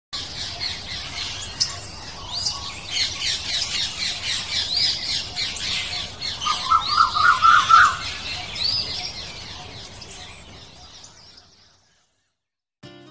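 A flock of small birds chattering and squawking, with many quick arching calls overlapping and a rapid run of lower notes about seven seconds in. The sound fades out toward the end.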